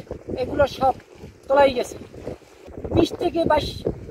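A man speaking in short phrases with brief pauses: the speech of an interview at a microphone.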